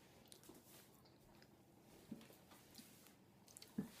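Near silence, with a few faint soft mouth clicks of someone chewing a mouthful of sponge cake.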